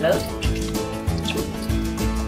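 Borș, a fermented sour liquid, pouring in a thin stream from a plastic bottle into a pot of soup, over steady background music.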